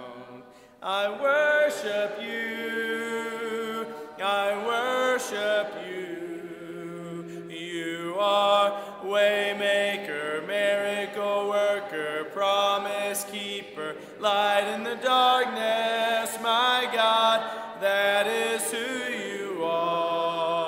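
Congregation singing a hymn unaccompanied in a cappella style, many voices together in long held notes. A short break comes just under a second in, and brief breaths fall between the phrases.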